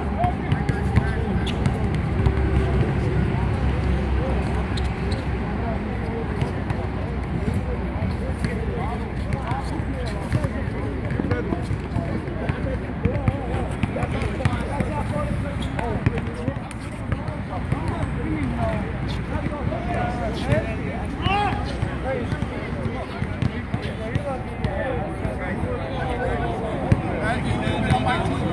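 A basketball bouncing on an outdoor hard court during a pickup game, with short sharp ball impacts scattered through players' indistinct calls and chatter.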